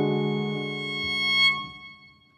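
Bowed cello sounding a sustained note that starts sharply, swells about one and a half seconds in, then fades away near the end.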